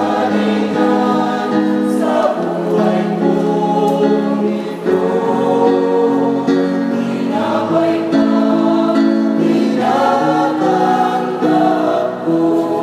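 Mixed choir of men and women singing a Tagalog communion hymn in several parts, holding long chords that change every second or two, in a reverberant church.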